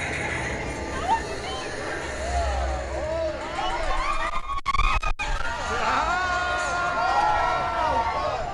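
Riders on the Twilight Zone Tower of Terror drop ride screaming and shouting in many short high-pitched yells, with one long held scream near the end.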